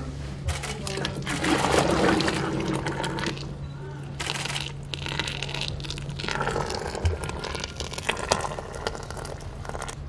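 Salep, a thick milky drink, poured in a stream from a steel pot into a brass dispenser urn, loudest a couple of seconds in, with voices talking in the background.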